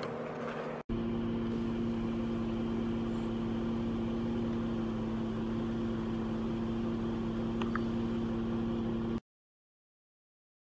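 A steady mechanical hum with two held low tones, starting abruptly about a second in and cutting off suddenly near the end.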